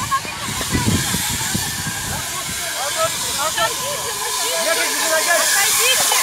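Steady hiss from a city bus's burning engine compartment as it pours smoke, growing a little louder toward the end, with a crowd of bystanders talking over it.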